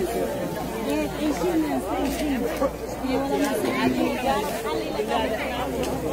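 Chatter of several women talking over one another, their voices overlapping with no pause.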